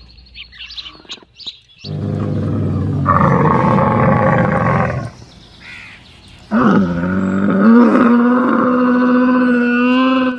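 Two long, loud animal calls: one about two seconds in, lasting some three seconds, then from about six and a half seconds a camel's long bellow, which bends at first and then holds a steady pitch to the end.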